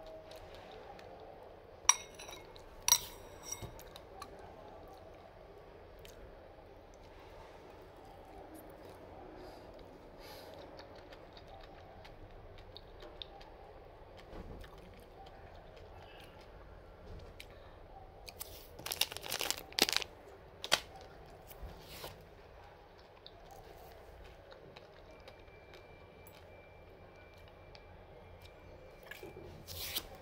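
A metal fork clinking against a ceramic bowl: two sharp, ringing clinks about two seconds in, then a quick cluster of clinks and scrapes a little past the middle, over a steady low background hum.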